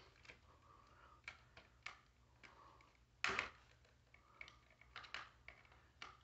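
Faint, scattered small clicks and scrapes of a plastic smoke alarm being worked loose by hand from its ceiling mounting base, with one louder brief noise about three seconds in.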